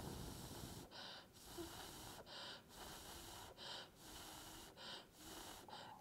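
A man blowing faint, repeated puffs of breath onto a fresh drop of hot-melt glue to cool it and set a toothpick in place, about one breath a second.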